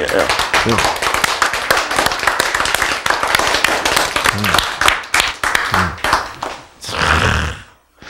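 Hands clapping: a small group applauding with dense, rapid claps and a few voices mixed in. The clapping stops about seven seconds in, with a short breathy burst just before the end.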